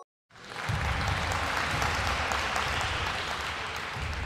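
Recorded applause sound effect, fading in after a brief silence at the start and then going on steadily.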